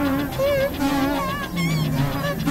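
Experimental electronic music made of several layered tracks at once: many wavering tones stacked at different pitches, each wobbling up and down several times a second.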